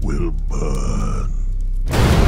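A horror-film monster's guttural grunt, falling in pitch, followed by a held growling sound over a low steady rumble. It all cuts off sharply just before the end.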